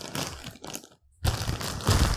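Clear plastic packaging crinkling and rustling as a folded aluminium tripod is slid out of its wrapping, cutting out briefly about halfway through.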